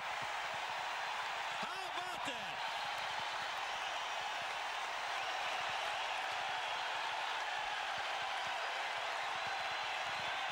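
Large baseball-stadium crowd cheering and clapping on its feet, a steady wash of crowd noise, with one voice rising out of it about two seconds in.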